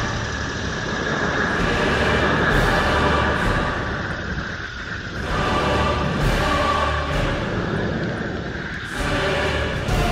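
Background music with sustained chords.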